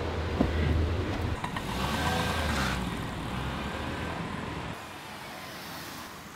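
Car engine running, heard from inside the cabin, with a steady low hum. The hum drops away about five seconds in.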